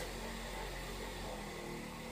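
Large electric car buffer running with a steady low hum.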